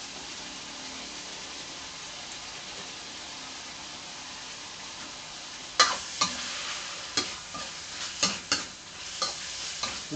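Pork belly pieces sizzling steadily in hot oil in a wok. About six seconds in, a metal ladle starts stirring them, scraping and knocking against the wok several times.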